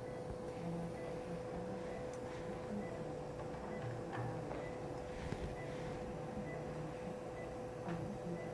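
Operating-room background: a steady electrical hum with faint short high beeps about once a second, and a few soft clicks of surgical instruments.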